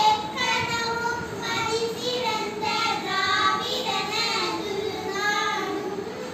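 Schoolchildren singing a prayer together, a slow melody with long held notes.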